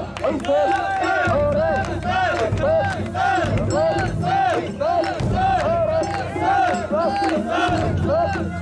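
Crowd of mikoshi carriers chanting a rhythmic call in unison, about two calls a second, as they bear the portable shrine, with hand claps keeping time.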